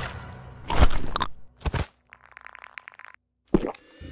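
Cartoon sound effects: a few heavy thumps, then a rapid crunching rattle lasting about a second, then a single short thud after a brief silence.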